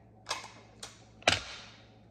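Sticky tape being pulled and torn from a handheld tape dispenser: three short sharp snaps about half a second apart, the last the loudest.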